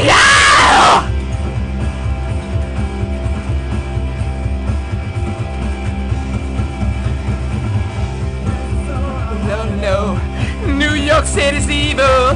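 A man's loud yell over the first second, then a rock song playing with a steady beat. Singing comes in near the end.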